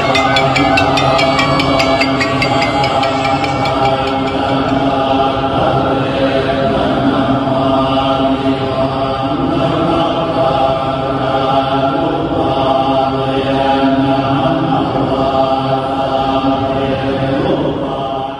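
Buddhist monks chanting together in unison, a steady sustained recitation of many voices.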